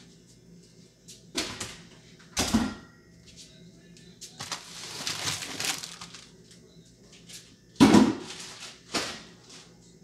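Plastic-bagged packages of frozen meat in foam trays being handled: crinkling plastic and several knocks as they are picked up and carried off, with the loudest thump about eight seconds in.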